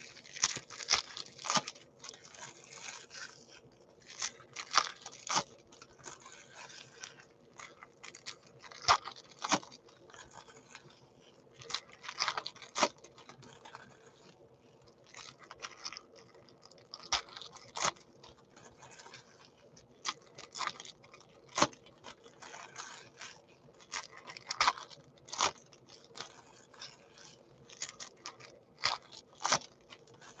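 Foil wrappers of Topps Chrome baseball card packs being torn open and crinkled by hand, in irregular bursts of sharp crackling every second or two.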